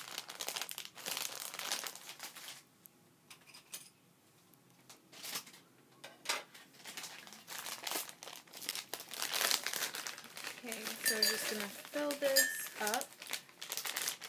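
Thin plastic candy bag crinkling as it is handled and pulled open, with a quieter gap about three seconds in before the rustling picks up again.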